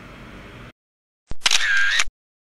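A short edited-in sound effect: a sharp click about a second and a quarter in, then a loud, bright, buzzy sound with a wavering whining tone that lasts about half a second and cuts off suddenly.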